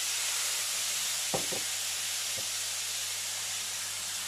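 Water poured into semolina roasted in hot ghee in a kadai, hissing and sizzling hard as it turns to steam, the hiss slowly dying down. Two or three brief knocks of the wooden spatula against the pan come just past the middle.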